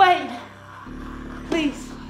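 Two wordless cries from a person acting as a zombie: a loud one at the start that falls in pitch, and a shorter falling one about one and a half seconds in, over a steady low music drone.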